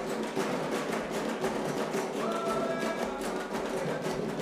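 Atabaques, tall Afro-Brazilian ritual drums, struck with thin sticks in dense, steady drumming, with a few held pitched notes sounding over it.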